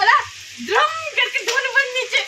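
Heavy rain falling, a steady hiss behind a person's voice.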